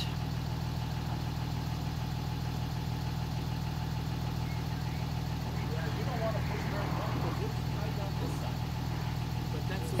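Pickup truck engine idling with a steady, even low hum.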